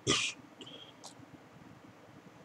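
A person's short, sharp breath noise, followed by a faint thin high tone and a light click about a second in.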